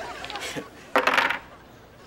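A pair of dice shaken in cupped hands and rolled onto a tabletop, with a short hard clatter about a second in.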